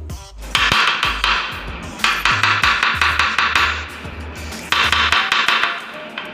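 Green jade facial roller's stone head tapped against a hard surface, giving quick clinking taps in bursts. The hard stone-on-surface sound is taken as the sign that the roller is genuine stone rather than a plastic fake.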